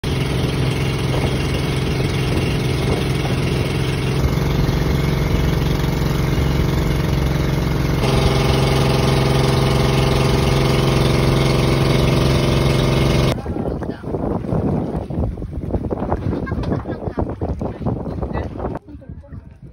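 A boat's engine running at a steady drone with rushing water, broken by abrupt cuts about four and eight seconds in. About thirteen seconds in the drone cuts off suddenly to quieter, uneven sound.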